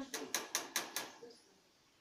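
A quick, even run of about five sharp clicks, roughly five a second, stopping about a second in.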